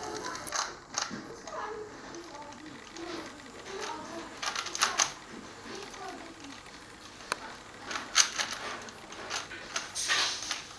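Plastic Rubik's Cube layers being twisted quickly by hand: rapid runs of clicks and clacks, busiest about halfway through and again near the end.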